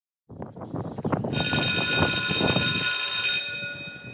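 Edited outro sound effect: a rough rumbling rush that builds, then bright high ringing tones come in over it about a second in, and both fade out near the end.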